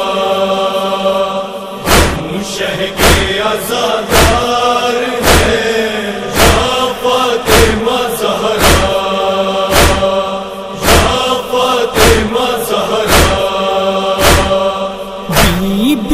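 A male chorus chants a sustained, wordless drone beneath a nauha. About two seconds in, rhythmic matam (chest-beating) strikes join it, roughly two a second with every other one stronger, keeping time for the lament.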